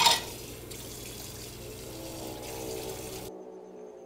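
Tap water running into a stainless-steel sink while a plate is rinsed, with a brief clatter of crockery at the start. The running water cuts off abruptly near the end.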